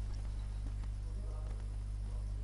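A steady low hum, like electrical mains hum on the recording, with a few faint clicks and a faint voice in the background.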